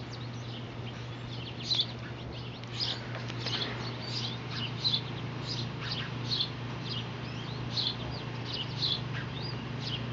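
Wild birds chirping: a steady string of short, high calls and trills, several a second, over a steady low hum.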